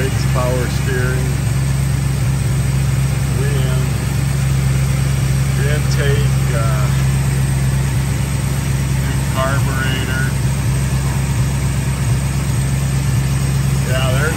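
Rebuilt 318 small-block V8 of a 1972 Dodge Charger idling steadily and evenly; the engine runs really good.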